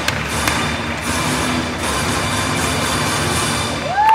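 Gymnastics floor-routine music playing over a hall's loudspeakers as the routine draws to its close.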